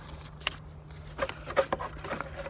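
Clear plastic fishing-lure packaging handled in the hands, crinkling and clicking: one click about half a second in, then a quick cluster of clicks and crinkles in the second half, the sharpest about one and a half seconds in.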